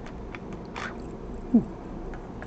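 Faint clicks and scrapes of a key being worked in and drawn out of a Schlage JD60 deadbolt. The keyway is fouled with hardened superglue and the plug has been heated, so the pins still bind. A large box fan hums steadily underneath, and a short low sound rises about one and a half seconds in.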